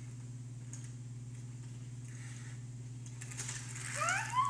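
A steady low hum, with a few faint light clicks and scrapes of small toy cars being handled on a plastic playset.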